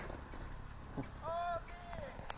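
Fairly quiet: a few soft clicks about a second apart, and a brief distant call that rises and falls in pitch, near the middle.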